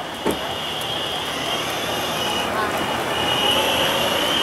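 Electric skateboard rolling across asphalt: a steady high motor whine over the rumble of the wheels on the pavement, a little louder near the end.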